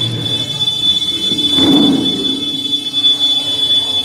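Public-address microphone feedback: a steady high-pitched squeal held throughout. A louder rustling thump comes about halfway through as the microphone is approached and handled.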